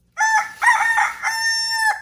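A rooster's cock-a-doodle-doo crow: three short rising-and-falling notes, then one long held note that drops away at the end.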